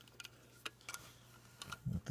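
Irregular small metallic clicks and ticks from a Mercury II camera's rotary shutter mechanism as its shutter-speed setting is turned to a slower speed, widening the gap in the round shutter disc.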